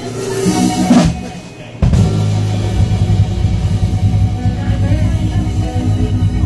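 A live band with drum kit, electric bass, electric guitar and keyboard starting a song: a brief lead-in and a short lull, then the full band comes in together about two seconds in with a steady driving beat.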